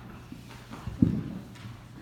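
Children moving on a hardwood floor: a few soft knocks and one dull thump about a second in.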